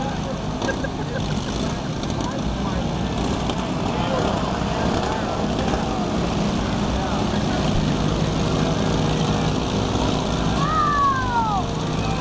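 Several riding lawn mower engines running together in a steady, continuous drone, with crowd voices over them. One falling shout rises above it near the end.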